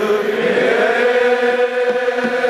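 Group of men chanting together in unison, holding one long voiced note that wavers slightly in pitch.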